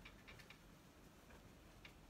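Near silence, with a handful of faint light ticks as an oil-paint brush dabs against a stretched canvas.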